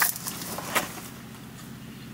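Steady low hum of a vehicle's cabin with no one talking, with one short tap about three quarters of a second in.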